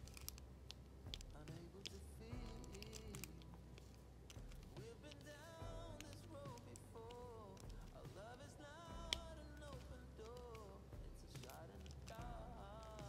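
Quiet background music, with a sung melody coming in about five seconds in. Under it are scattered faint clicks of a diamond-painting drill pen picking drills from a plastic tray and pressing them onto the canvas, with one sharper click about nine seconds in.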